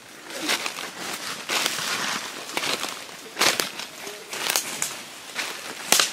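Footsteps crunching through dry fallen leaves and brushing through undergrowth: an irregular run of crackles and rustles, loudest at about one and a half seconds in and again at about three and a half seconds.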